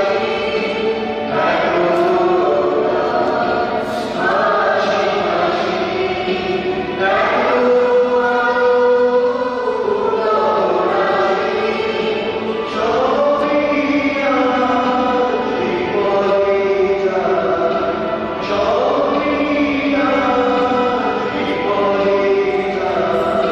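Church choir singing a slow hymn or chant, with held notes that change every second or two.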